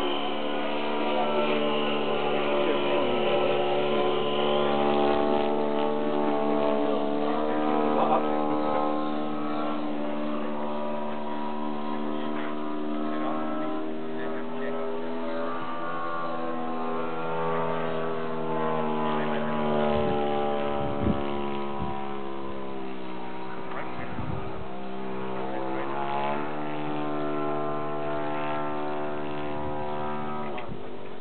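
Electric motor and propeller of an RC foam airplane droning steadily, the pitch rising and falling slowly as the throttle changes, with a few short knocks.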